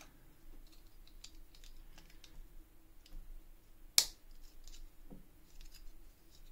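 Plastic Lego pieces being handled and fitted together: scattered faint clicks and taps, with one sharp click about four seconds in.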